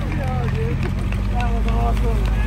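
Willys MB's original L134 four-cylinder engine running steadily, with people's voices over it.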